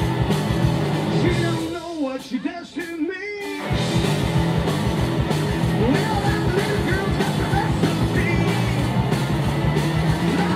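Live rock band with three electric guitars, bass and drums playing loudly. About two seconds in, the band drops out, leaving a lone electric guitar bending notes, then the full band comes crashing back in shortly before the four-second mark and plays on.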